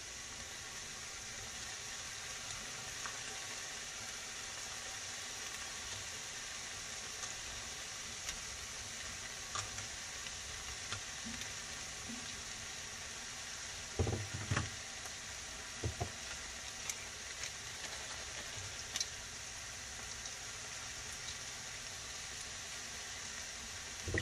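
Turkey and vegetable skillet sizzling steadily in a frying pan on the stove, with a few soft knocks in the middle.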